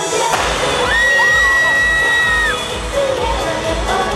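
A live K-pop dance song plays through an arena sound system with a steady bass beat while a large crowd screams and cheers, the cheering surging about a third of a second in. A single long high note is held for about a second and a half in the middle.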